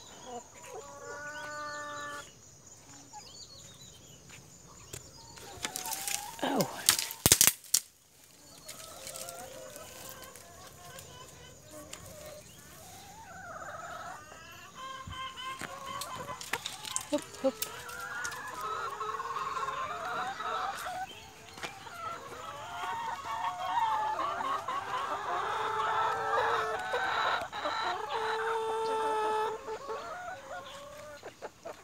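A flock of chickens clucking, sparse at first and growing into a dense, busy chorus through the second half, with a single drawn-out crow near the start. A burst of loud rustling and knocks cuts in about six to seven seconds in.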